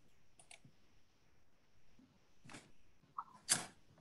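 A few faint clicks and short rustling noises over a quiet line. The loudest is a brief burst of noise a little over three and a half seconds in.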